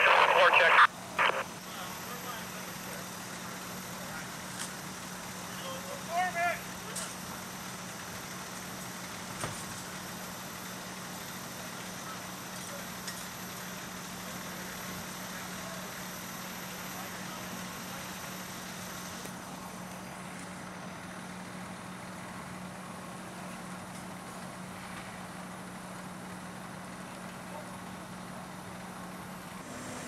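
Fire engine's engine running steadily at the pump with a low, even drone, feeding water to the charged hose lines.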